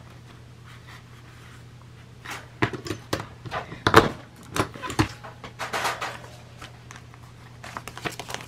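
A metal multi-hole paper punch pressed down through paper: a run of sharp clicks and clunks in the middle of the stretch, the loudest about halfway through, with paper being handled around them.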